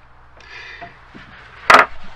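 Plastic pressure-washer parts being handled on a wooden tabletop: a faint scrape about half a second in, then a single sharp knock near the end.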